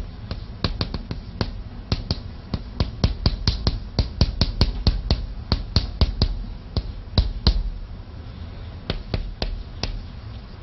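Chalk writing on a chalkboard: an irregular run of sharp taps and knocks as each stroke of the Chinese characters hits the board. The taps come thick and fast in the middle and thin out toward the end.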